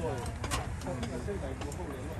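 Indistinct voices of people talking, over a steady low hum, with a sharp click about half a second in.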